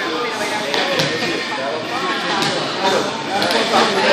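Overlapping voices of people in a large gym, with a few short, sharp knocks from weights or equipment, two of them in quick succession near the end.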